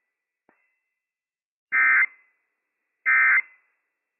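Emergency Alert System End of Message (NNNN) SAME data bursts marking the close of a Required Weekly Test. Two short two-tone digital warbles play about 1.3 seconds apart, each lasting about a third of a second.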